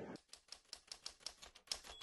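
Typewriter keystroke sound effect: a run of faint, quick clicks, about five a second, as on-screen title text is typed out letter by letter.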